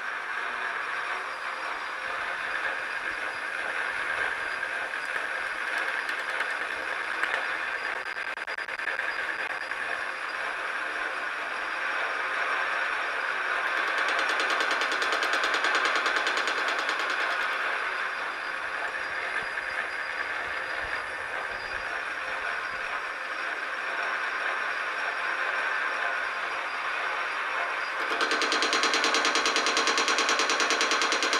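Precision Matthews PM-1127 metal lathe running while the cutting tool takes an interrupted cut on the uneven points of an off-centre scrap piece, a rapid rhythmic clatter as the tool strikes the work each revolution. The clatter gets louder about halfway through and again near the end as the tool contacts more of the work.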